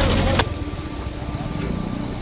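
Mini excavator's diesel engine running close by, a loud low rumble that drops off suddenly with a click about half a second in, then carries on as a quieter steady engine hum with faint steady whining tones.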